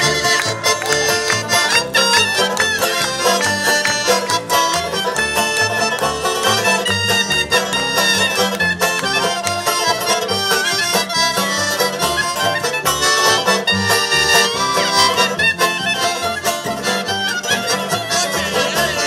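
Traditional folk dance music played by a band: melody instruments over a steady, regular bass beat.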